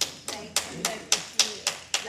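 Hand clapping at an even pace, about four claps a second, with voices talking underneath.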